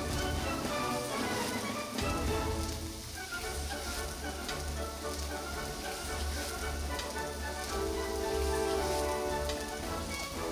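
Slices of horse meat sizzling on a hot stone grill plate, a dense rain-like patter of crackles and pops.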